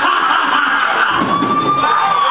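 Live rock band playing in a small bar: electric guitars and a singer through a PA, with a held note around a second in.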